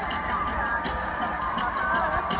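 Arena crowd noise with scattered cheers and whistles over quiet music carrying a light, regular ticking beat.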